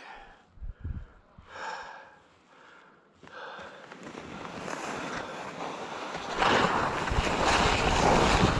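Skis sliding over packed snow, with wind rushing over the microphone, building from about three seconds in as the skier picks up speed and loudest near the end.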